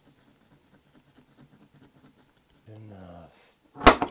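Faint scratching of a small file on a diecast metal post, then near the end one sharp, loud snap of a spring-loaded automatic center punch firing to mark the post for drilling.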